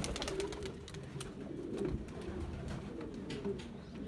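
Domestic pigeons cooing, a low wavering sound that keeps on, with scattered light clicks and taps.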